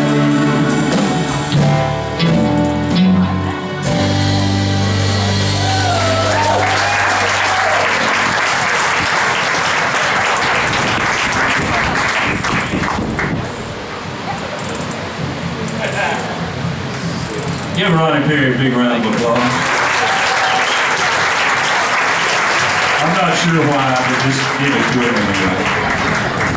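A live band finishes a song on a held final chord in the first few seconds, then the audience applauds, with voices calling out over the clapping.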